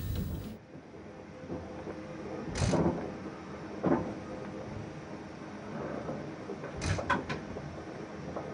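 Sound from the outdoor train shot cuts off about half a second in. End-screen whoosh sound effects follow: one whoosh about two and a half seconds in, another near four seconds, and a quick cluster of swishes around seven seconds, over a faint steady hum.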